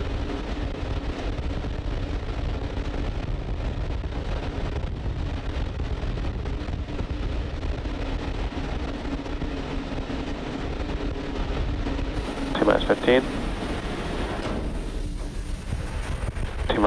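Steady low rushing noise from the fuelled Falcon 9's launch pad in the final seconds before ignition, with a constant low hum underneath. A brief voice cuts in about three-quarters of the way through.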